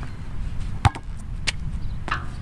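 Two sharp knocks about two-thirds of a second apart, the first a heavier thud, during a squat-jump-and-shot drill with a heavy basketball on an asphalt court. They are most likely sneakers landing from the jump, then the ball striking the backboard.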